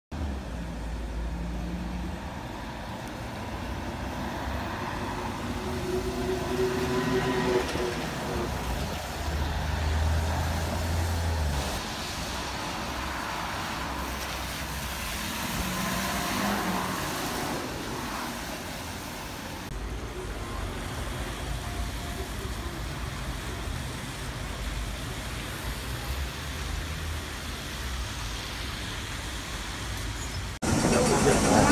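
City street traffic with buses and trolleybuses driving past, heard as a steady low rumble. The sound changes abruptly a couple of times as one short street clip gives way to the next.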